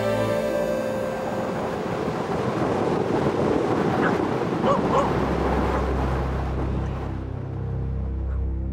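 Rushing wind-and-surf noise with a few short, sharp calls about halfway through, while soft background music fades out at the start and comes back in the second half.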